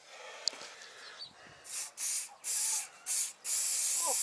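Aerosol spray-paint can hissing in about five short bursts, starting about a second and a half in, the last burst longest, as paint is sprayed in spots onto a wooden box.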